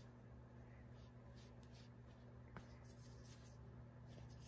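Faint rustling of wool fibres being rolled around a pair of sticks to lift a rolag off a blending board, over a steady low hum, with one light tick about two and a half seconds in.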